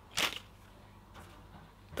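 A paper party blower blown once, giving only a short breathy puff of air and no toot: it doesn't even make a noise.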